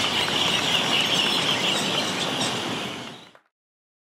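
A flock of parakeets calling together at a dusk roost: a dense chorus of many short, shrill, overlapping calls. It fades out a little over three seconds in.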